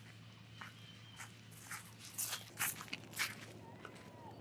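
Footsteps of a person walking on grassy ground, about six steps, getting louder, with the three loudest in the second half as the feet pass close by. A faint steady low hum runs underneath.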